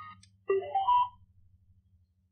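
Softy SBS-10 Bluetooth speaker playing a short electronic prompt of rising tones, about half a second in, as it switches modes to Bluetooth. Memory-card music from the speaker cuts off just before it.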